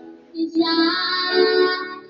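A young girl singing a long held note into a handheld microphone over a backing track, coming in about half a second in after a short breath.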